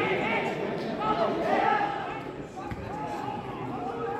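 Football players shouting and calling to each other across the pitch, several voices overlapping. A single dull thud of a ball being kicked comes a little after halfway.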